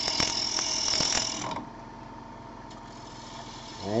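A gouge cutting the outside of a spinning wooden bowl on a wood lathe: a hiss of shavings peeling off, with a few sharp ticks. About a second and a half in, the cut stops and only the lathe's steady motor hum remains.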